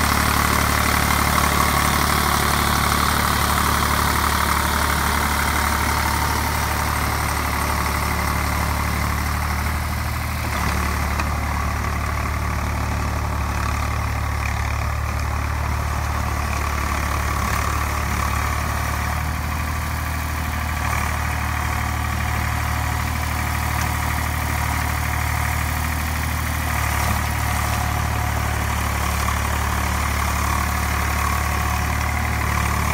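Eicher 485 tractor's three-cylinder diesel engine running steadily under load with a low, even drone. It is driving a rear rotary tiller through wet paddy mud, and the level sags slightly about ten seconds in.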